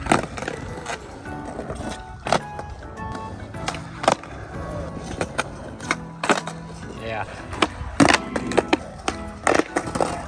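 Skateboards doing flip tricks on smooth concrete: sharp tail pops, board clacks and wheel landings, about one every two seconds, over background music with vocals.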